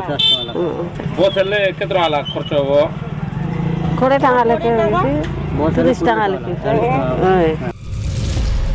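A woman speaking in short phrases over a steady low background hum; the speech breaks off just before the end.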